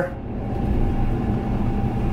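Twin diesel engines of a Viking 60 motor yacht running at low throttle: a steady low rumble with a faint constant hum.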